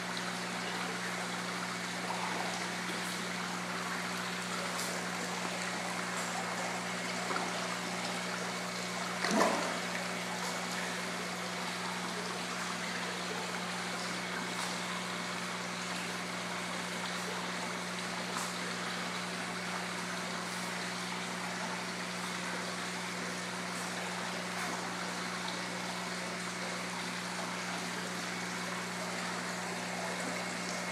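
Steady trickle of water running into an indoor koi pond over a constant low hum, with one louder splash about nine seconds in.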